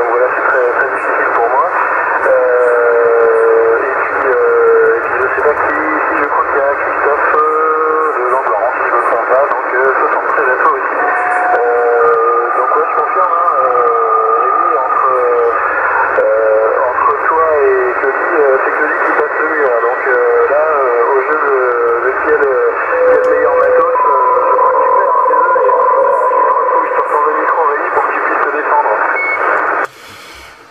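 Voices of distant stations received over a Yaesu FT-450 transceiver in lower sideband on CB channel 27. The sound is thin and band-limited, and the words are hard to make out. Steady whistling tones come and go over the speech.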